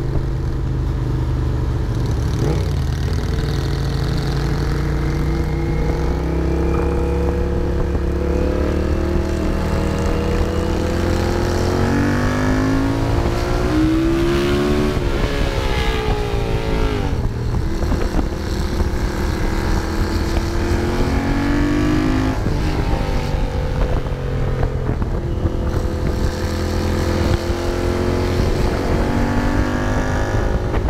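Honda CX650 cafe racer's V-twin engine through Peashooter mufflers, heard on board while riding, its pitch rising and falling repeatedly as it accelerates and shifts through the gears.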